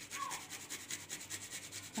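A garlic clove rubbed quickly back and forth against the tines of a metal fork to grate it, a soft, even rasping at about ten strokes a second.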